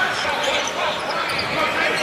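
Steady crowd murmur and court noise in a basketball arena during a game.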